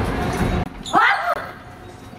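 A person's short vocal exclamation about a second in, sliding steeply down in pitch, after a low rumble that cuts off suddenly about half a second in.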